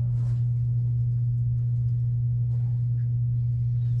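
A steady low hum at one unchanging pitch. A few faint scratchy marker strokes on a whiteboard come near the start.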